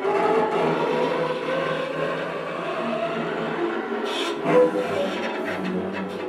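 String quartet bowing a dense, rough passage of sustained notes, mixing pitch with scratchy noise. It enters together out of silence at the start and swells briefly a little past the middle.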